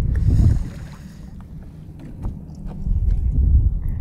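Low rumble of wind buffeting the microphone, loudest at the start and again near the end, with a few faint clicks.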